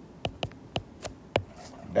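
A stylus clicking against a drawing tablet while writing by hand, with about five short clicks at uneven intervals.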